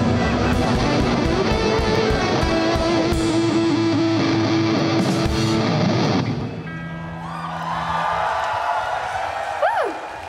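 A live indie-pop band plays loud, with electric guitar and drums. The song ends about six seconds in, and a few held notes ring on more quietly.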